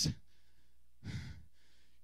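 A man's single short breath into a close handheld microphone about a second in, over low room tone.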